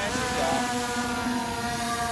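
Skydio 2 quadcopter drone's propellers whining as it is launched from a hand: the pitch rises at the start, then holds steady as it flies off.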